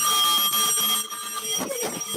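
A bell ringing: a loud, sustained ring of several clear high tones that drops somewhat in level about a second in.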